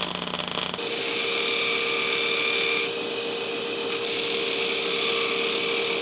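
Electric arc welding crackles for the first second. Then a Wilton belt grinder runs with a steady hum while the welded square steel tubing on a hardy tool shank is ground against its belt. The grinding hiss eases off about three seconds in and comes back a second later.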